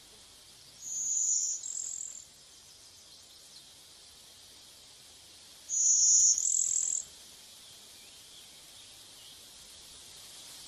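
A bird gives a high, two-note call twice, about five seconds apart, the second note of each call slightly higher than the first, over a steady high-pitched hiss.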